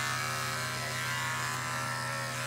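Corded electric pet clippers running with a steady, unchanging hum as they shave a dog's fur.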